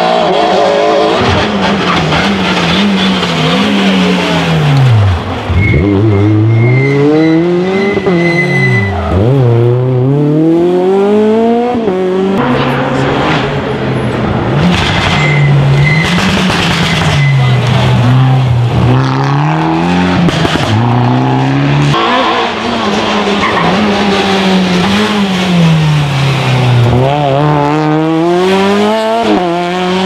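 Hatchback rally cars, among them a Citroën C2 and a Fiat Grande Punto, driven hard one after another through a bend. Each engine revs up and drops repeatedly through gear changes, braking and accelerating. The engine sound changes abruptly twice as one car gives way to the next.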